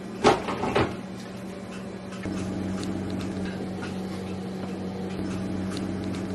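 Two short knocks about half a second apart, then the steady low hum of an open refrigerator with a faint rushing noise that grows a little louder about two seconds in.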